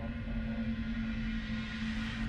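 Dark ambient music drone: one low sustained tone held steady, with a hissing wash swelling above it near the end.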